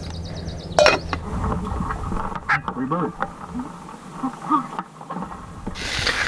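Faint, muffled voices with a few sharp knocks.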